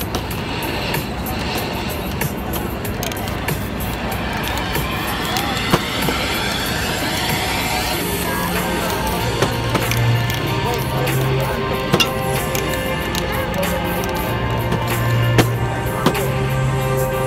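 Music playing over the scraping and rubbing of a hand tool worked across a spray-painted board, with a few sharp clicks; the music's low notes grow stronger in the second half.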